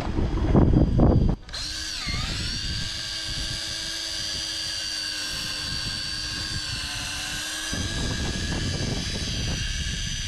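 Wind and water noise on the microphone, then about a second and a half in a Daiwa Tanacom 1000 electric fishing reel's motor starts winding line in, a steady whine that sags in pitch for a moment and then holds. Wind rumble comes back under the whine near the end.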